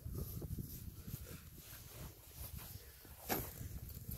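Faint rustling and scraping of hands and a metal-detecting pinpointer working loose soil and grass at a dug hole, with one sharp click a little over three seconds in.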